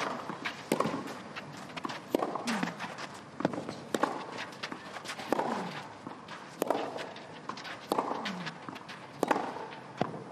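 Clay-court tennis rally, starting with a serve: sharp racket-on-ball strikes go back and forth about once every second, some answered by a player's short grunt, with shoe steps on the clay in between.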